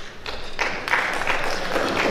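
Audience applauding, a dense patter of many hands clapping that swells up shortly after the start.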